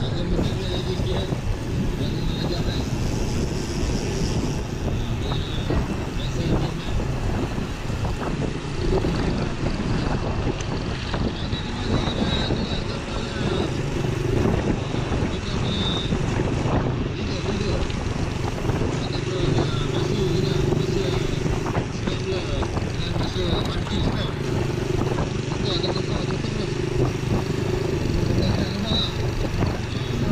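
Wind and road noise on a handlebar-mounted action camera's microphone while cycling at about 20–25 km/h, with a small motorcycle's engine running steadily just ahead from about halfway through.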